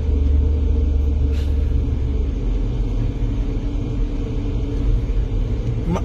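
Steady low rumble of a car's engine and road noise heard from inside the cabin, a little heavier for the first two seconds.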